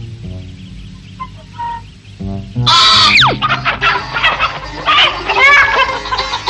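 Light background music, then about 2.7 s in a sudden loud commotion with a quick falling glide and hens squawking and clucking in alarm as one is snatched.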